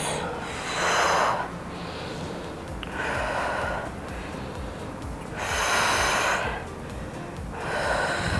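A woman breathing slowly and deeply to recover after a set of hip-raise exercises: four long, breathy inhales and exhales, about two and a half seconds apart.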